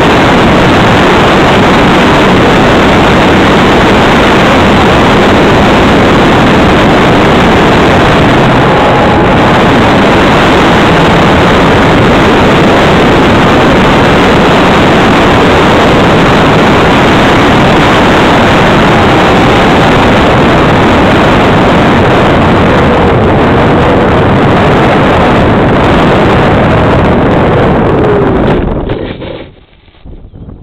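Loud, steady rush of airflow over a wing-mounted camera's microphone in flight, mixed with the electric motor and propeller of an E-flite Apprentice RC plane, with a few faint rising and falling tones. The noise falls away sharply near the end as the plane touches down on the grass.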